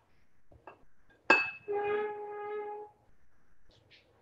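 Hands working a crumbly flour-and-oil mixture in a glass mixing bowl, with faint rustles and one sharp clink against the glass about a second in, followed by a steady pitched tone for about a second.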